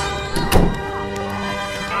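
Dramatic film music, cut through about half a second in by a sharp thunk: louvered wooden closet doors slammed shut.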